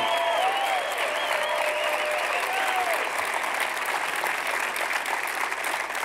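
Audience applauding steadily, with a few voices cheering over it in the first seconds.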